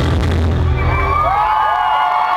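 Live country band's closing chord, its low bass heavily distorted in the recording, cutting off about one and a half seconds in. A crowd cheers and whistles over it, with whoops that rise and fall in pitch.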